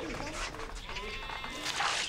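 A single bleat from a farm animal, lasting about a second, with a brief noisy burst near the end.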